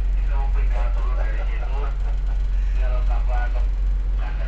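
A tugboat's engines running with a steady low drone, heard from inside the wheelhouse, with indistinct voices talking over it.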